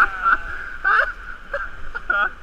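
Rushing whitewater of river rapids around an inflatable kayak, a steady loud rush, with two short vocal outbursts from a paddler, one at the start and one about a second in.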